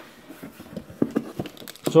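Cardboard box being handled as its lid and flaps are opened: a few light taps and scrapes of cardboard, mostly in the second half.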